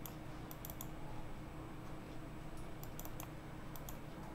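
A handful of faint, scattered clicks at a computer while browsing a registry tree: a few close together about half a second in, more near three seconds and one near the end, over a faint steady hum.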